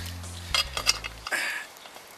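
A few light metallic clinks of a hand tool against the well cap's retaining screw as it starts to be loosened.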